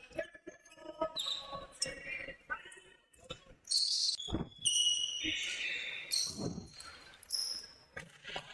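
Sounds of live basketball play on a gym floor: a ball bouncing in thuds, several short high-pitched squeaks from about halfway through, and players' voices.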